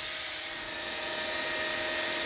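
POLAR N137 Plus high-speed paper cutter running idle with its main drive on: a steady machine hum with a few faint steady tones.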